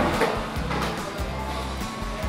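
Background music with a bass line.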